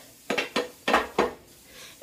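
Small objects being handled and set down: four short clicking knocks in quick succession in the first second and a half, like hard items bumping together.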